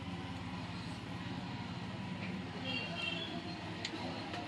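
Steady low background hum with faint voices in it, and one sharp click just before the end.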